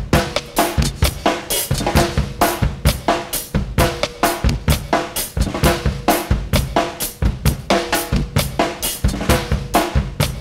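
Post-hardcore band recording in an instrumental passage carried by a drum kit: snare, bass drum and cymbals playing a steady beat of about four hits a second, with sustained bass and guitar notes underneath.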